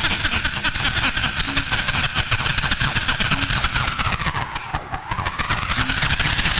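Tape playback from portable cassette players in a homemade tape-sampler module: a dense, crackly tape texture with a pitched tone that sinks and then rises again as the motor speed is turned down and back up. A short low note recurs about every two seconds.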